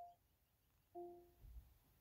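Two short, faint electronic chime tones from an Amazon Echo Auto playing through the car stereo, one right at the start and a slightly longer one about a second in. They are Alexa's tones acknowledging a spoken request, heard before its voice reply.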